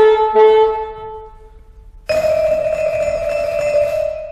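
An alto saxophone and vibraphone phrase ends, with the last vibraphone note ringing out and fading. About two seconds in, a steady, breathy held tone starts suddenly.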